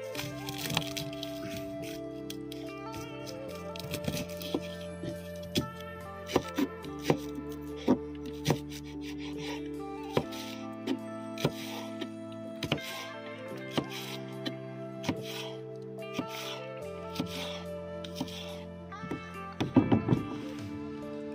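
Kitchen knife chopping on a plastic cutting board, first through dried red chillies and then through green-onion stalks: irregular sharp chops, about one or two a second, heard over steady background music.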